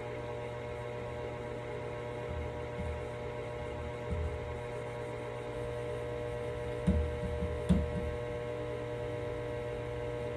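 Steady electrical mains hum, with a few soft knocks from handling a wooden cabinet door at its hinge. The two sharpest knocks come about seven and eight seconds in.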